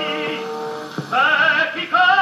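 Music from an old film recording of a song with orchestra. A held chord fades about half a second in, and after a short break a high voice enters with wide vibrato about a second in.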